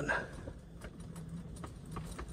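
Wind rumbling over the microphone, with faint scattered clicks and ticks.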